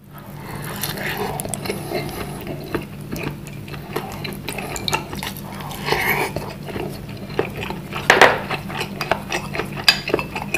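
Close-up eating sounds: chewing, and a spoon clicking and scraping against a small ceramic bowl of bakso broth. A steady low hum runs underneath.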